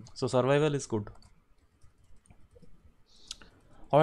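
A man speaks briefly. In the pause that follows there are a few soft clicks, the sharpest about three seconds in, and speech starts again right at the end.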